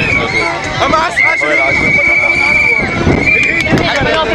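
A whistle blown in long trilling blasts over a crowd of shouting voices: one held blast from about a second in, then a shorter one near the end.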